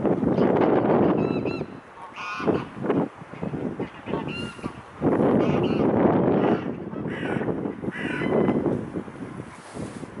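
Birds giving several short, separate calls over the water, one after another. Two loud bursts of rushing noise, one at the start and one about five seconds in, are louder than the calls.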